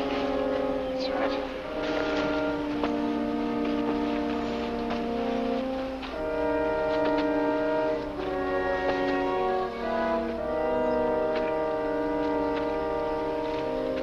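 Orchestral TV drama underscore led by brass, slow held chords that shift every second or two.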